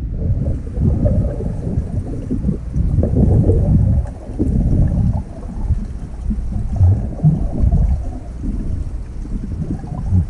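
Muffled, irregular underwater rumble and sloshing of a swimmer moving through pool water, heard through an underwater camera's waterproof housing.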